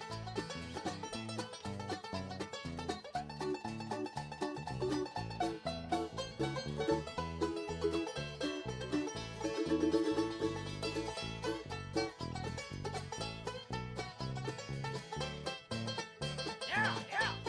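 Live bluegrass band playing an instrumental, with fast banjo picking over upright bass, guitar and fiddle.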